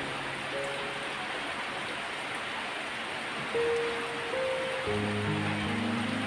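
Steady rain hiss under soft background music of long held keyboard notes, with lower notes joining near the end.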